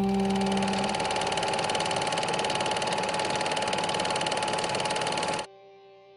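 A dense, fast-pulsing mechanical-sounding rattle of noise over the song's last held note. It cuts off abruptly near the end, leaving the note's faint ring.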